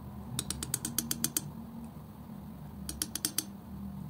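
Steel palette knife working white acrylic paint on a textured painting board, its blade ticking against the surface in two quick runs of sharp clicks, about eight a second: one run about half a second in, a shorter one near the end.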